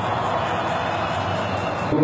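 Large stadium crowd cheering in a steady roar, celebrating a goal.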